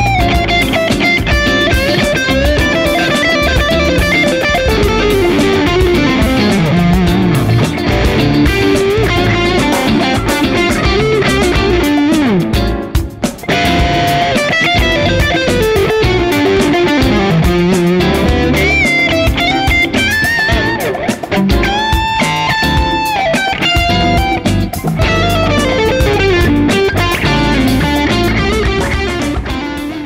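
Gibson Les Paul Standard '60s electric guitar played as a single-note lead, with many string bends and some long held notes. The playing pauses briefly about 13 seconds in and fades out at the end.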